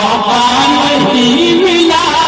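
Male voice singing a naat, holding long notes through a loudspeaker system, with the pitch stepping up after about a second.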